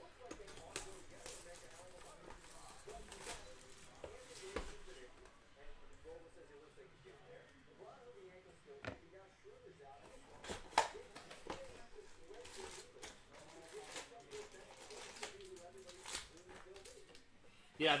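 Handling of a cardboard trading-card hobby box and its foil-wrapped packs being unpacked: light rustling and crinkling with scattered taps and clicks, the sharpest knock about eleven seconds in.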